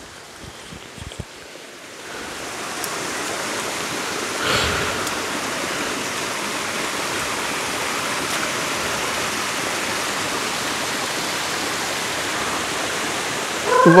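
Water rushing over a small rock waterfall and down its channel. Faint at first, it swells about two seconds in to a steady rush.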